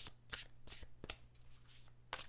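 Tarot deck being shuffled in the hands: a quick run of soft card flicks, about three a second.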